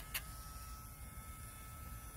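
Battery-powered Dremel rotary tool with a sandpaper band running on its low setting, a faint steady whine over a low background rumble.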